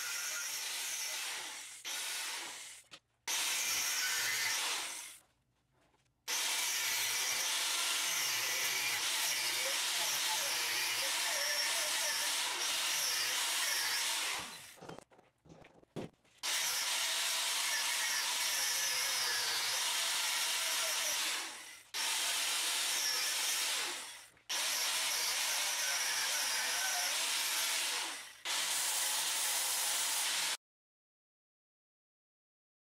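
Angle grinder grinding unneeded cast mounts off an engine cylinder head, metal on an abrasive disc. It runs in several long passes of a few seconds each, with brief silent gaps between them.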